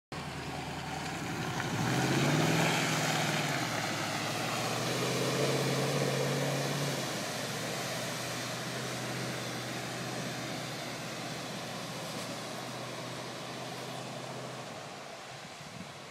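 Chevrolet K5 Blazer's engine revving hard as it drives through a mud pit, the pitch climbing about two seconds in and surging again a few seconds later. The engine then holds a steady note and fades as the truck moves away.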